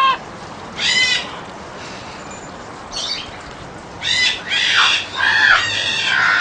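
Young green-winged macaw squawking in separate calls while its flight feathers are clipped: a short call at the start, another about a second in, a brief one near the middle, then a run of harsher squawks over the last two seconds.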